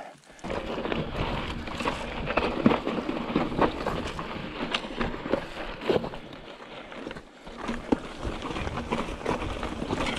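Fezzari Wasatch Peak mountain bike riding down rough, rocky singletrack: tyres rolling and crunching over loose rock, with frequent sharp rattles and knocks from the bike as it bounces over the rubble.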